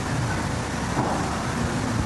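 A steady rushing hiss with a low rumble under it, without words.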